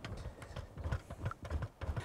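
Faint, irregular low knocks and clicks of a wooden stick stirring thick tarmac restorer in a metal paint tin.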